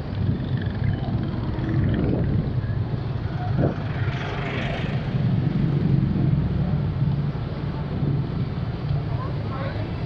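Motorcycle engine running steadily at low speed with wind rumble on the onboard camera's microphone, amid city street traffic.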